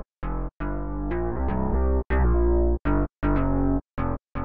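A soloed bass line of detached notes with brief gaps between them, played through a delay plugin with its right-channel delay being raised from a few milliseconds to 15 ms. The right side sounds a few milliseconds after the left, so the mono bass is spread wide in stereo while leaning to the left.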